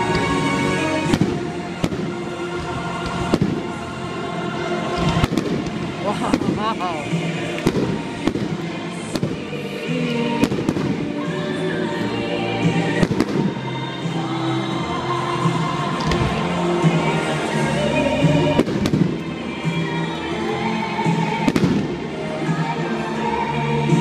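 Aerial fireworks shells bursting, a sharp bang every second or two, over loud music with a voice in it.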